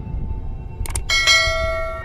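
Outro jingle: a bell-like chime struck about a second in, then again just after, ringing on with several steady tones over low background music.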